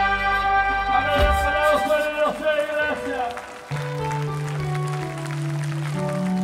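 Live band music: a sustained chord breaks off about a second in, a man's voice comes over the sound system, then a low steady keyboard note is held under the music.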